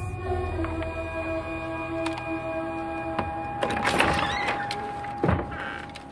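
Tense film-trailer score of several held, steady tones, with a few sharp clicks. A dense rush of noise comes about four seconds in and a shorter one near the end.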